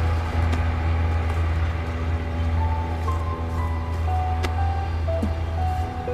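Slow background music: single held melody notes entering about halfway through over a steady low drone, with one short click about four and a half seconds in.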